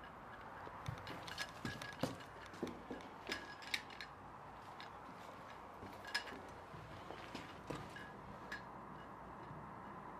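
An irregular run of light, sharp clicks and clinks, bunched in the first few seconds and thinning out toward the end, over a faint steady hiss.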